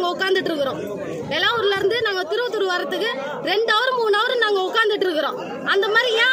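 A woman speaking in Tamil, with a crowd chattering behind her.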